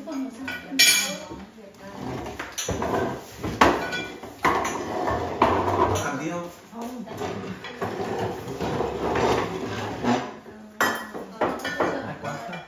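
Chopsticks, spoons and bowls clinking and clattering on a dining table while people eat, in a run of irregular sharp clinks, with a laugh about seven seconds in.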